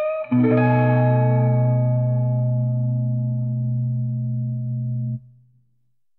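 Smooth blues on electric guitar: one last note of a rising run, then a full chord over a deep bass note held for about five seconds before it cuts off, leaving near silence, as at the close of a song.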